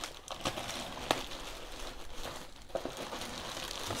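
Thin clear plastic bag crinkling and rustling as it is pulled open and off a backpack by hand, with a few sharp crackles.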